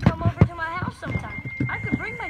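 Cartoon dialogue played from a screen and picked up by a phone: a character's voice talking, with a couple of sharp clicks early and a thin steady high tone coming in about halfway.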